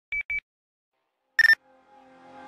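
Short electronic beeps: two quick higher beeps near the start and a single lower beep about a second and a half in. Electronic music starts fading in faintly near the end.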